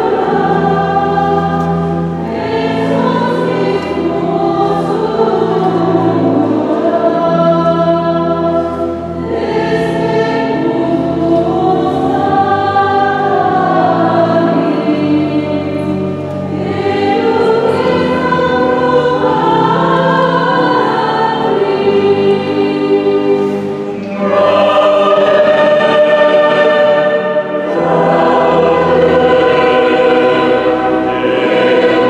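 A mixed church choir singing a hymn in sustained phrases, with brief breaks between phrases about every seven seconds.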